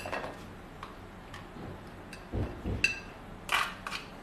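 A plastic tub of heavy gloss gel medium being handled and its lid opened: scattered sharp clicks, a couple of dull thumps about halfway, and a short scrape near the end.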